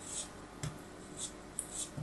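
Kinetic sand being cut with a thin blade: about four short, gritty scraping strokes, one with a soft thump as the blade pushes through the packed sand.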